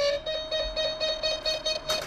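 Wall-mounted apartment door intercom ringing with a rapidly pulsing electronic tone as visitors call at the door, with a sharp click near the end.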